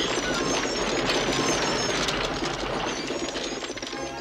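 Cartoon sound effect of a torrent of berries pouring in through a window: a dense, rushing clatter of many small pops, easing off a little near the end.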